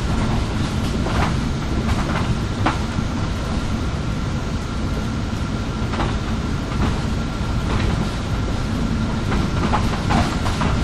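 City bus driving along a street, heard from inside near the front: a steady low rumble of engine and road with a thin constant whine above it. Short rattles and knocks from the bus body come now and then, a few in the first three seconds, again about six seconds in and near the end.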